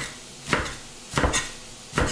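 Kitchen knife chopping chard and kale stalks on a plastic cutting board: about four separate knocks of the blade on the board, two of them close together.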